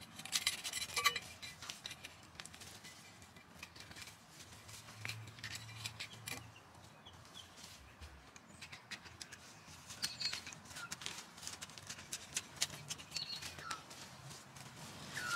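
Small hand cultivator scraping and digging in clay garden soil as weeds are loosened: scattered short scratches and clicks, busiest in the first second and again later on.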